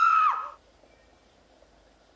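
A single held high note closing a piece of music, cutting off about a third of a second in with a short drop in pitch, then faint quiet.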